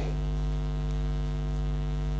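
Steady electrical mains hum through the sound system: a continuous buzz of many evenly spaced tones, unchanging throughout.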